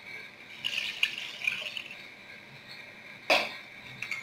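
Water being poured into a cooking pot holding goat meat and stock: a soft splashing for about a second and a half, then a single knock near the end.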